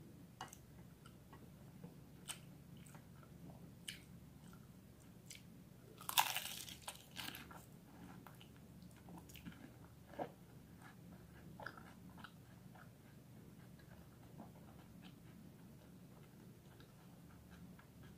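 Biting and chewing a fried chicken samosa's crisp pastry shell: scattered crunches, loudest in a burst about six seconds in, then softer chewing crunches.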